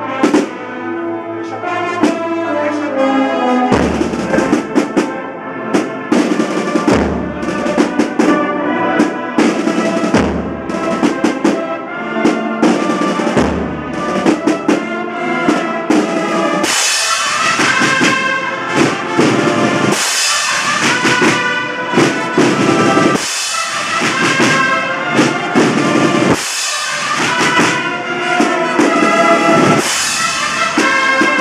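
A Spanish agrupación musical, a brass and drum band of trumpets, cornets and trombones over marching drums, playing a Holy Week processional march. Deep drum beats come in about four seconds in, and the band grows fuller and brighter about seventeen seconds in.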